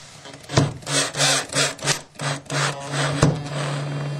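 A drill driving a wood screw home into a wooden carpet transition strip, with the screw grinding through the wood: a run of short bursts with a steady motor hum under them, then a longer unbroken run near the end.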